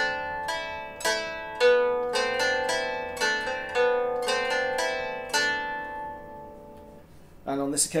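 Germanic round lyre plucked with a plectrum: a note about every half second over a ringing drone on the fifth string. The plucking stops about five seconds in and the strings ring out and fade, with a man's voice starting near the end.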